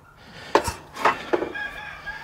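A few short sharp knocks, then a faint, long held call from a farm bird that starts a little past the middle.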